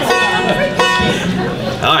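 Banjo plucked casually between songs: a few single notes ringing out, a new one about every second.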